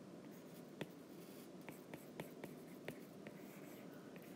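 Faint taps and strokes of a stylus on a tablet's glass screen: a handful of light, short ticks spaced unevenly over quiet room tone.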